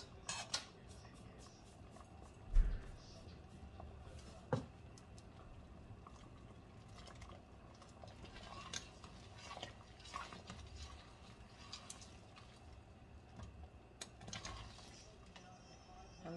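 Long metal spoon stirring soup in a large stainless-steel stockpot: soft, sparse clinks and scrapes of metal on metal, with a dull knock about two and a half seconds in and a sharp ringing clink about four and a half seconds in.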